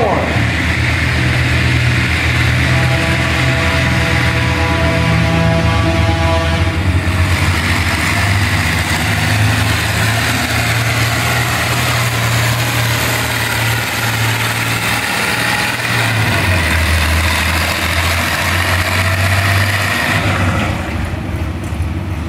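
Massey-Harris 101 Senior pulling tractor's engine, bored and offset-ground to 465 cubic inches, running flat out under full load in third gear as it drags a weight-transfer sled. A steady high whine sits over it from about three to seven seconds in. About sixteen seconds in the engine note drops as it lugs down under the sled's growing load, and the sound falls away about two seconds before the end.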